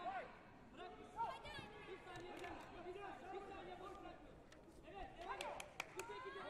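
Indistinct chatter of several voices echoing in a large sports hall, with a few sharp clicks and raised voices near the end.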